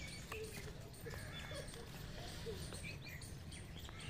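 Faint outdoor ambience: a steady low rumble with scattered short bird chirps and a few light clicks.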